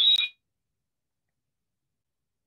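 A steady high-pitched two-tone whine under the tail of a spoken word, cut off abruptly about a third of a second in; then dead silence for the rest, the call's audio line gone quiet.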